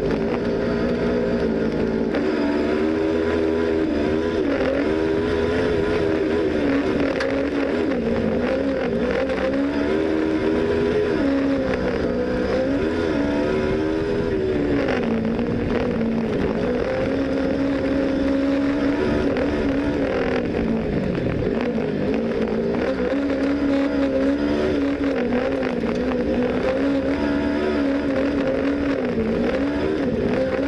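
Cross kart's Kawasaki ER-6 parallel-twin motorcycle engine heard from the cockpit, driven hard on a dirt track. Its note rises and falls continually as the driver accelerates, shifts and lifts off, with one deep drop in revs about two-thirds of the way through.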